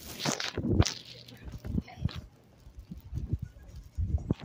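A burst of rustling and rubbing handling noise in the first second, then soft, evenly spaced footsteps on pavement.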